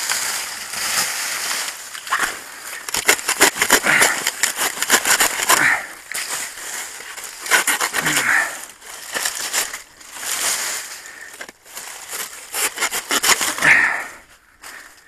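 Dry banana leaves and leaf sheaths rustling and crackling with many short sharp snaps as a freshly cut green banana bunch is handled among them.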